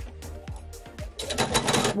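Electric sewing machine starting about a second in and running fast, a rapid clatter of needle strokes, over soft background music. The machine is misbehaving.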